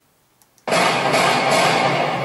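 A rifle shot in a street: a sudden loud blast about two-thirds of a second in, after near silence, its echo ringing on without break.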